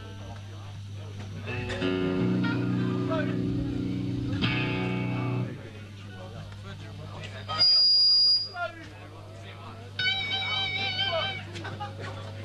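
Amplified electric guitars between songs: a chord held for about four seconds and then cut off, followed by a brief loud high-pitched feedback squeal, the loudest sound, and a wavering note near the end, over a steady low amplifier hum.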